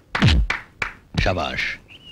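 A punch landing on a heavy punching bag with a deep thud just after the start, a lighter knock just under a second in, then a short shout of voice about a second and a half in.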